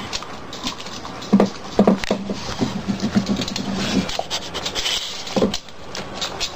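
Dog licking and eating from its food bowl: a quick, irregular run of wet clicks and scrapes. A low steady tone joins in from about one and a half seconds to four seconds in.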